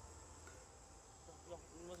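Faint, steady high-pitched drone of insects chirring, with a voice starting near the end.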